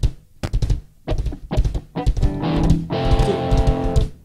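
Rock band playing live, drum kit and electric guitars with bass: sharp accented hits with short gaps between them, then a held guitar chord over the drums from about halfway through.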